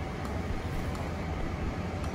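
Steady low rumble of outdoor city background noise, with no distinct event standing out.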